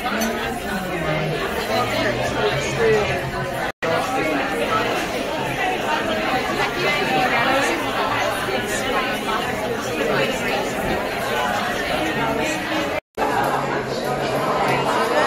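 Crowd chatter in a busy restaurant: many voices talking at once, filling a large room. The sound cuts out briefly twice.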